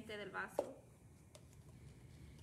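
A brief snatch of a woman's voice, then a single sharp click about half a second in and a fainter click later, over quiet room tone while a paper cup is handled.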